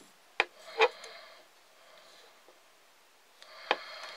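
Handling of a homemade flat-top mole trap as it is set: three short, sharp clicks and knocks of its wooden block and fittings, two in the first second and one near the end, with quiet between.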